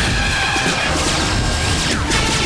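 Dramatic action music over a volley of gunfire, with bullets striking a car.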